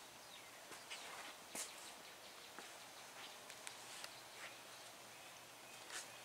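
Near silence: faint room tone with a few scattered soft ticks and rustles.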